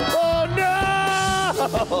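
Live band music with a long held note through the middle.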